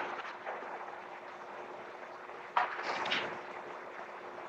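Steady hiss of an old film soundtrack with a faint steady hum under it. A brief soft breathy sound comes about two and a half seconds in, then fades within about half a second.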